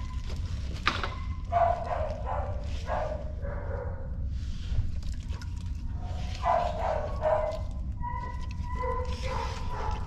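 A dog whining and giving short yelping calls in two bouts a few seconds apart, with a thin steady whine near the end, over a steady low hum.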